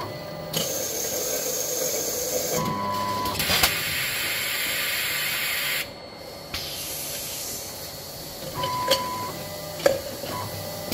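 Filling valves of a CIMEC can-filling monoblock hissing in two long bursts of gas, each lasting about two seconds. Sharp mechanical clicks and a short steady tone come between the bursts and again near the end.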